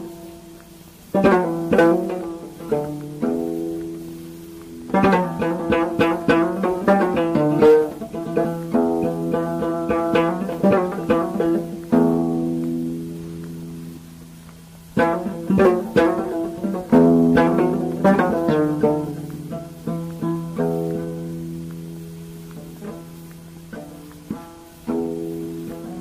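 Instrumental Amazigh folk music: a plucked string instrument plays phrases of quick notes over a steady low drone, with short gaps between the phrases and no singing.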